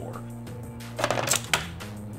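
Plastic Ultra Bakugan toy clattering across the table and snapping open about a second in: a short burst of clicks and rattles lasting about half a second, from a roll whose transformation doesn't come off cleanly. Background music plays steadily underneath.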